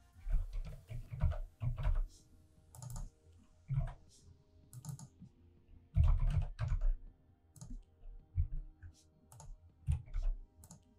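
Computer keyboard typing in irregular bursts of keystrokes with short pauses between them.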